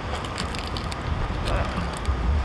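Wind rumbling on the microphone over road traffic, with a few faint crinkles as the cardboard apple-pie sleeve is handled and bitten into.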